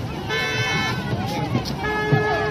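Vehicle horn honking twice: a steady toot of under a second, then a second toot starting near the end, over a crowd's chatter.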